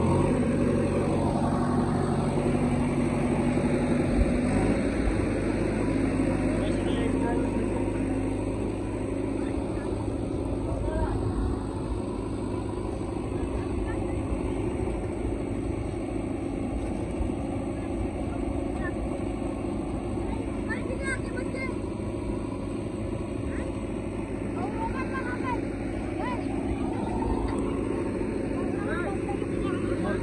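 JCB 3DX backhoe loader's diesel engine running steadily as the backhoe digs and loads mud, a little louder in the first few seconds.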